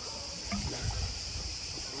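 Water gently lapping and trickling around a small boat's hull, under a steady high drone of cicadas.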